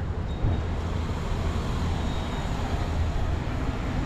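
Steady low mechanical hum under an even wash of outdoor background noise, with no distinct events.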